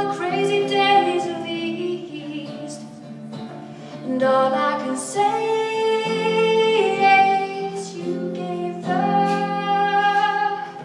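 A woman singing in long held notes to her own acoustic guitar. She eases off for a moment midway, then comes back in full voice.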